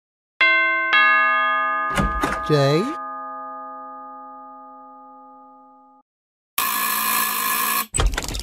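Doorbell chime sounding a two-note ding-dong, its tones ringing on and slowly fading out over about five seconds, with a short cartoon voice a couple of seconds in. Near the end, a harsh, buzzing sound lasts about a second.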